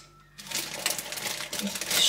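Groceries being handled in a plastic crate: plastic packaging rustling and crinkling, with quick small clicks and knocks. It starts about half a second in.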